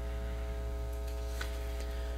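Steady electrical hum with a buzz of evenly spaced overtones, with a faint tick about one and a half seconds in.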